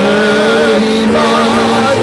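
A voice singing long held notes with a wavering vibrato, without clear words, over a steady held note beneath.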